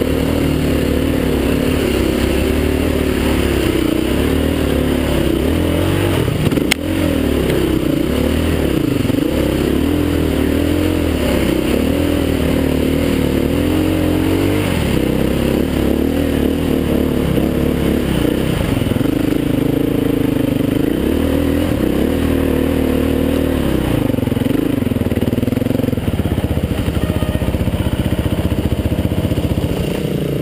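Off-road dirt-bike engine heard through a helmet-mounted camera, its revs rising and falling constantly as it is ridden over rough trail. A single sharp knock comes about seven seconds in.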